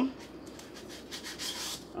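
Packing foam rubbing and scraping against plastic as it is worked out from under a 3D printer's build platform: a run of short scratchy rubs, busiest about a second and a half in.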